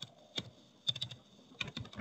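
Computer keyboard being typed on: a few single key clicks, then quick runs of keystrokes about a second in and near the end, as a word is typed into code.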